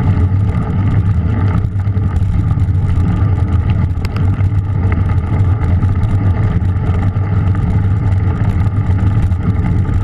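Mountain bike riding a muddy trail, heard through a bike-mounted action camera: a loud, steady low rumble of wind and tyre noise with small rattles and clicks scattered throughout.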